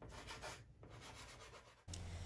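Faint rubbing and scratching of a soft pastel stick being worked across dark pastel paper in uneven strokes; it cuts off abruptly just before the end.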